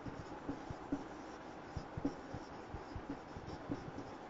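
Marker writing on a whiteboard, faint, with small irregular ticks and scratches as a word is written out.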